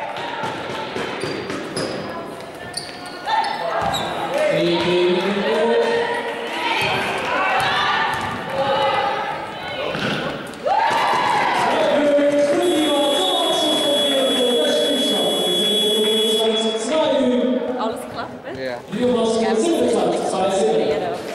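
Scoreboard buzzer sounding one steady high tone for about four seconds, past the middle, marking the end of the second quarter. Around it, players' and spectators' voices and a basketball bouncing on the gym floor, echoing in the hall.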